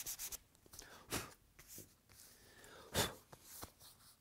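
Sandpaper on a hand block scuffing dried filler back down to a veneer marquetry panel in rapid short strokes. The sanding stops about half a second in. Then come a few soft, separate knocks and rubs as the panel and tools are handled.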